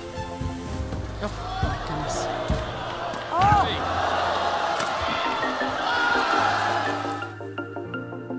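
Background music playing over badminton match sound: a few sharp racket hits on the shuttlecock, and from about a second in a swell of hall noise and a voice, loudest a little before the middle, which cuts off abruptly near the end.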